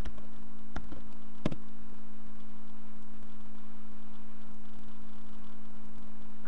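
Steady low electrical hum, with three short mouse clicks in the first second and a half.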